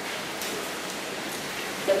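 A steady, even hiss with no distinct events in it.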